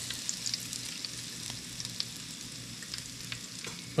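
Panko-breaded catfish fillets frying in a shallow pan of hot peanut oil: a steady sizzle with many small crackles and pops.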